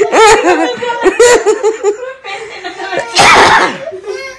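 Women laughing hard, with rapid repeated peals in the first second or so and more laughter after. Near the end comes a loud breathy burst.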